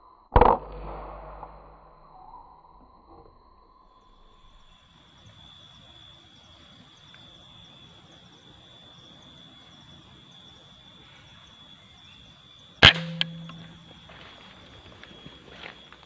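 Two shots from a PCP air rifle, each a sharp crack with a short ring after it: one just after the start and one about 13 seconds in. A faint steady high tone runs under them.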